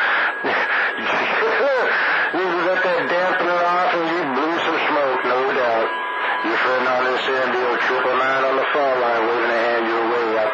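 Voices received over a CB radio on channel 28 skip, with no words coming through clearly. A thin steady whistle sits under them near the start, and a brief tone comes about six seconds in.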